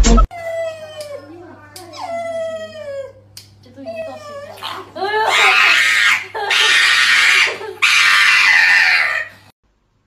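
A golden retriever whining in several falling-pitched cries. About five seconds in, loud human laughter takes over, and it cuts off sharply near the end.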